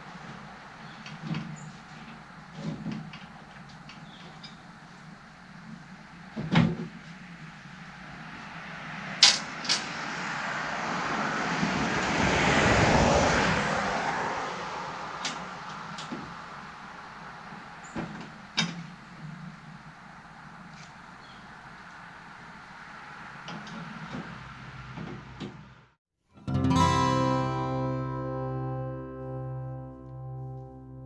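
Scattered light metallic clicks and taps as bolts are fitted and tightened to fasten a steel smoker's firebox to the cooker body. A vehicle goes by about midway, its noise swelling and fading. Near the end the sound cuts out and acoustic guitar music begins.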